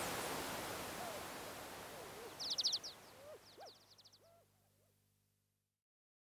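The end of an electronic nu-disco track fading out: a soft wash of noise with bird-like chirps, a quick burst of them about halfway through, and short rising-and-falling calls. It dies away to nothing near the end.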